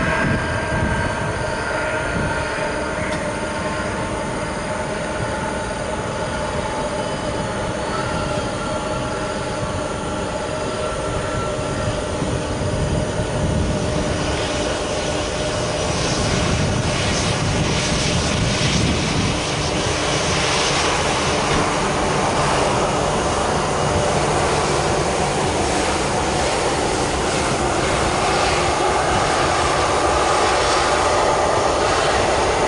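Airbus A320-200 jet engines running as the airliner moves along the runway: a steady multi-tone whine, with a broader rushing noise building from about halfway through.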